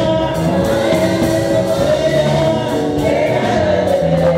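Live gospel praise song, amplified: a male lead singer on a microphone with a group of backing singers, over band accompaniment.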